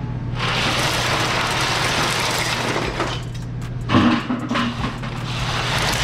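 Crushed ice poured out of a plastic bucket onto cans in a metal drink cooler: a dense rattling rush that eases off about three seconds in. There is a knock near four seconds, then more rattling of ice being spread.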